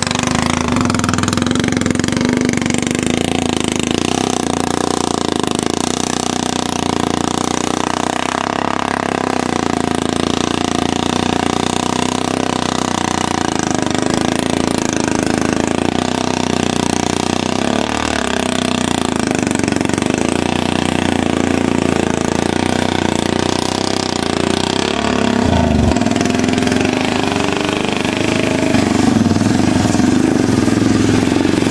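Four-wheeler ATV engine running steadily as the quad drives through a muddy pond, getting a little louder near the end.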